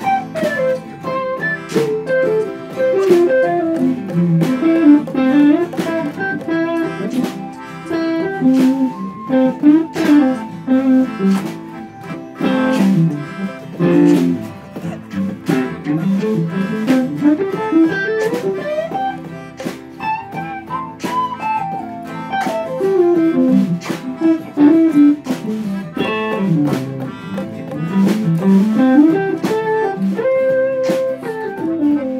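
Several guitars, electric and acoustic, jamming on a loop of C to A minor while a lead line plays quick melodic runs that rise and fall over the chords.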